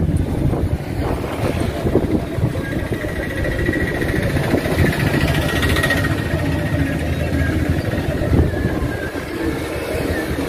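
Road traffic going by, a steady rumble of engines and tyres, with a faint high whine through the middle.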